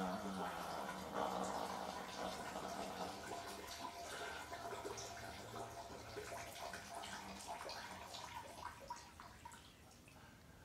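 A stream of urine splashing into toilet water, getting gradually quieter as it tapers off.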